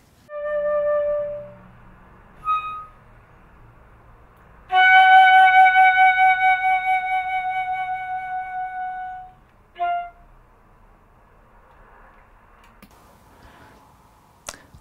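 Silver concert flute playing a few separate notes divided by rests: a short note, a brief higher one, then a long held note of about five seconds that slowly fades, and one short note just after it.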